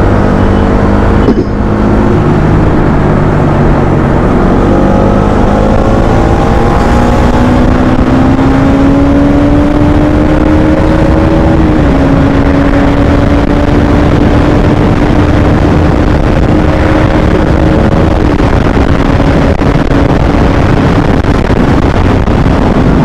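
Bajaj Pulsar single-cylinder motorcycle engine under way on a highway, its note climbing slowly and stepping down about twelve seconds in and again about eighteen seconds in, under heavy wind rush on the microphone. A short sharp knock comes about a second in.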